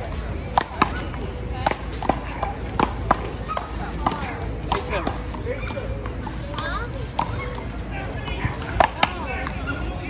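Paddleball rally: a rubber ball cracking off solid paddles and the concrete wall, a dozen or so sharp hits at irregular intervals, the loudest two close together near the end.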